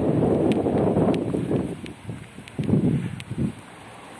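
Wind on the microphone and rustling of dry grass and shrubs, loudest in the first half, with two short rustling surges near the end and a few light clicks.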